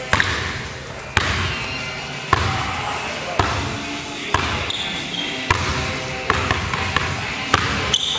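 Basketball dribbled on a hardwood gym floor: bounces about once a second, then several quicker ones near the end as he crosses the ball over low, each echoing in the large hall.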